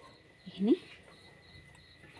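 Faint, rapidly pulsing high-pitched insect chirping in the background, with a short rising vocal sound from a person about half a second in.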